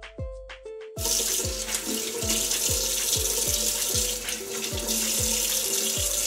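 Kitchen sink tap running, starting about a second in, as a pumpkin face mask is rinsed off. Background music with a steady beat plays under it.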